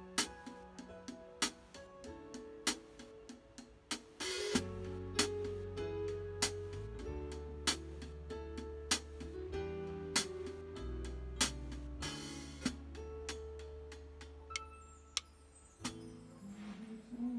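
Drum kit played with sticks in a slow pop ballad's instrumental intro: a sharp snare hit about every one and a quarter seconds with lighter strokes between, over guitar and a bass line that comes in about four and a half seconds in. Cymbal crashes near four seconds and near twelve seconds.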